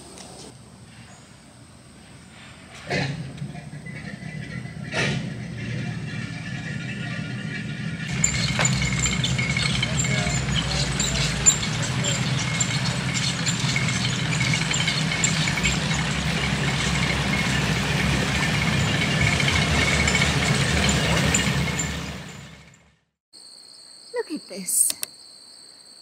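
Motor cruiser's engine running as the boat moves slowly past, a steady low rumble with hiss that builds over the first few seconds and cuts off abruptly near the end. Before it there are a couple of short knocks.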